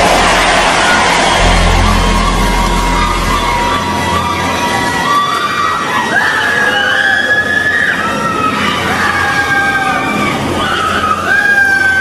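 A church congregation crying out and shrieking during deliverance prayer, many voices at once, over sustained background music with a low bass note that fades after about four seconds.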